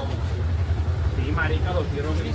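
A steady low hum, with people's voices starting about a second and a half in.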